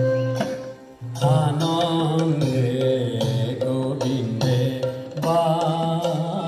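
Indian devotional music: a wavering, ornamented melodic line over a steady low drone, with a short break about a second in.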